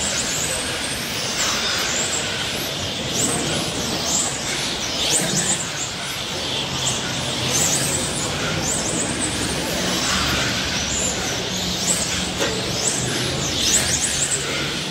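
Electric 1/10 RC touring cars (Serpent X20 FWD) lapping a track. Their motors whine in repeated short pitch sweeps, rising and falling about once a second as the cars accelerate and brake through the corners.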